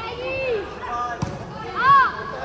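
A volleyball struck once about a second in, with short high calls from young players on the court. The loudest call comes near the end.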